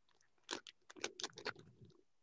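Faint close-up chewing of a crunchy molasses gingerbread cookie: a string of small crunches and mouth clicks that starts about half a second in.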